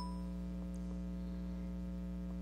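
Steady electrical mains hum in the recording: a low buzz with several fixed tones, unchanging throughout. A short ding's ring fades out at the very start.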